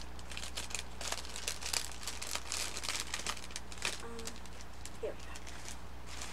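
Clear plastic packaging crinkling as craft trims are pulled out of it, a run of quick crackles that thins out after about four seconds.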